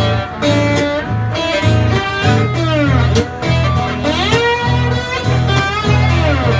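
Live acoustic guitars playing a blues instrumental break: a lead line with bent, sliding notes over a steady, rhythmic low accompaniment.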